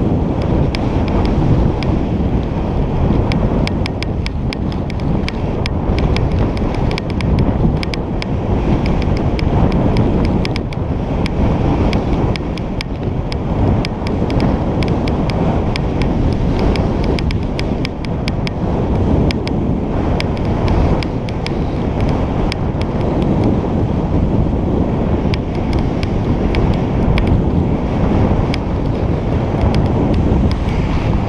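Wind buffeting the microphone of a GoPro Hero3+ worn by a skier moving downhill at speed: a loud, steady low rumble, with frequent faint ticks throughout.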